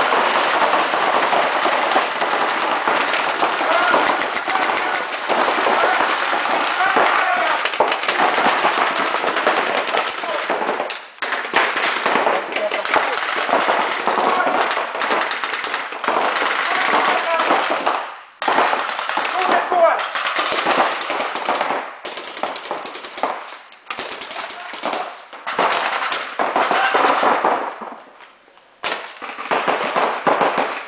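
Paintball markers firing reusable rubber reballs in rapid volleys, almost unbroken for the first ten seconds or so, then in shorter bursts with brief pauses. Players shout over the shooting, inside a large sports hall.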